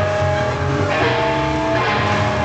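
Live rock band playing loud: electric guitar holding long sustained notes over bass and drums, moving to a new note about a second in.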